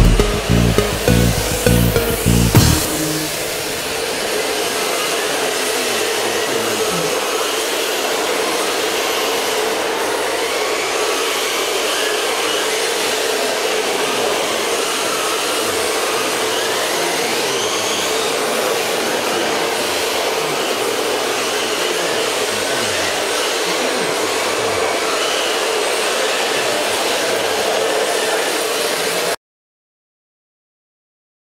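Music with a beat for the first few seconds, then a steady whirring hiss with occasional rising whines from electric RC drift cars' motors as they drift around the track. It cuts off suddenly near the end.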